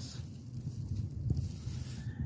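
Wind buffeting the microphone outdoors: an uneven low rumble with a faint hiss.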